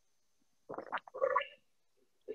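A short swallowing sound from a person's throat close to the microphone, under a second long, as a sip from the communion cup goes down.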